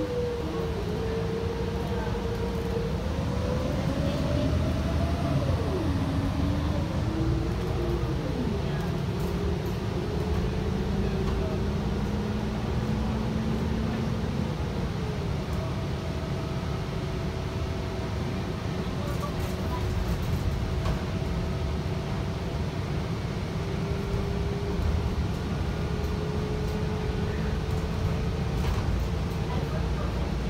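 Inside a 2022 Gillig Low Floor Plus 40-foot CNG transit bus under way: a steady drone of the natural-gas engine and road noise, with a whine that climbs as the bus picks up speed and drops sharply at gear shifts about five and eight seconds in, then holds nearly steady as it cruises.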